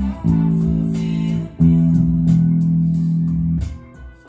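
Electric bass guitar, a Jazz Bass-style instrument, playing long held low notes over a recorded backing track with light percussion. A new note is struck about a quarter second in and another about a second and a half in, and the sound fades near the end.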